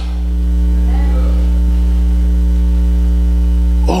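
Loud, steady electrical mains hum with a buzzing row of higher overtones, with a faint murmur of a voice about a second in.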